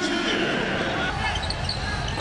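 A basketball bouncing on a hardwood court over arena crowd noise during live play.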